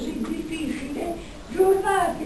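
Speech: a woman speaking Italian into a microphone, slowly, with some drawn-out syllables.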